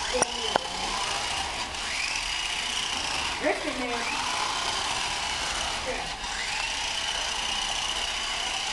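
Small electric motors of radio-controlled toy cars whining as the cars drive, the whine rising in pitch twice as they speed up and then holding steady. A couple of sharp clicks come just at the start.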